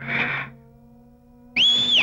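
A short, loud, high whistle lasting about half a second near the end, typical of a film's comedy sound effect, after a brief breathy noise at the start and over a faint sustained background-music drone.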